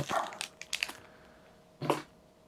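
Stiff game cards being handled and slid against each other, with a few light flicks about half a second in. A brief voiced sound comes near the end.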